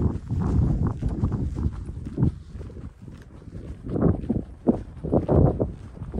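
Wind buffeting the microphone in irregular gusts, with a deep rumble, easing off around the middle and picking up again after about four seconds, over footsteps on short grass.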